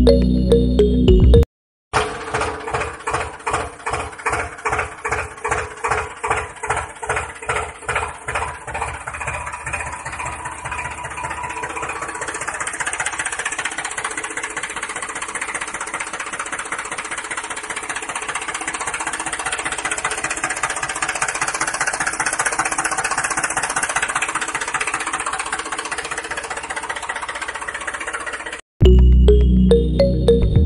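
A tractor engine sound: after a short burst of background music and a brief gap, the engine chugs at about two beats a second, then quickens and settles into a steady run.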